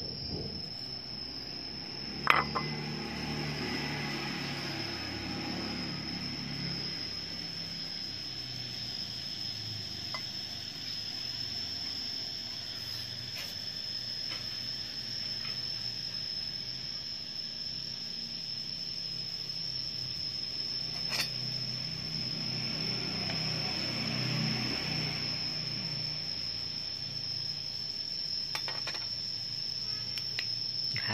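Crickets trilling steadily on one high pitch, with a sharp knock about two seconds in and a lighter click near the end.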